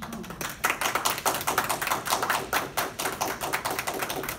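A small audience of a few people applauding, their separate hand claps distinct and irregular, several a second.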